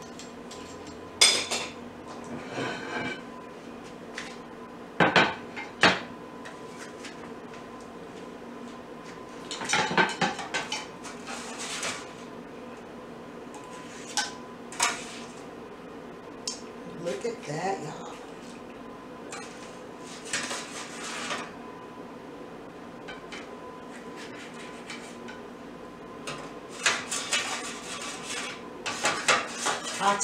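A pizza cutter and spatula scraping and clinking against a metal sheet pan in short, irregular bursts as tortilla pizza slices are cut and lifted off. A faint steady hum runs underneath.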